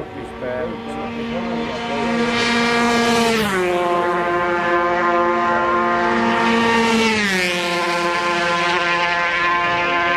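Racing motorcycles at high revs passing close by one after another, each engine note steady and then dropping in pitch as it goes past, about three seconds in and again about seven seconds in.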